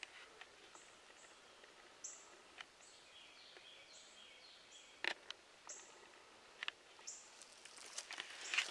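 Faint woodland quiet with a small bird giving short, high chirps about eight times, and a few faint crunches of dry leaf litter underfoot, the loudest about five seconds in.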